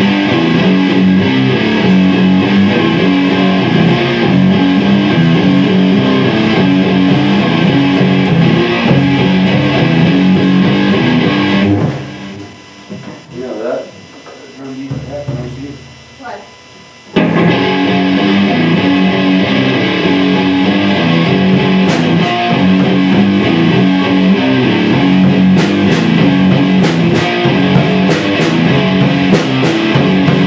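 Electric guitar played loudly through an amplifier. It stops abruptly about twelve seconds in, leaving a quieter gap of about five seconds, then starts again suddenly and plays on.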